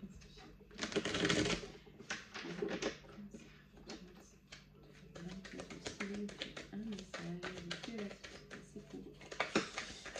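A deck of oracle cards shuffled by hand, a quick run of small card clicks and flicks, with a louder rustling burst about a second in.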